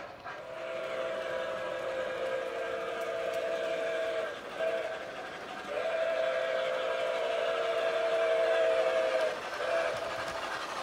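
Model steam locomotive's onboard sound system blowing a steam whistle with two steady notes: a long blast, a short toot, a second long blast and another short toot. Chuffing and steam hiss run beneath it.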